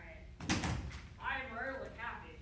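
A metal-framed folding chair knocks once, loudly, about half a second in as it is moved on the carpet, followed by a person speaking briefly.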